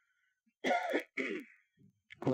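A man clearing his throat twice in quick succession.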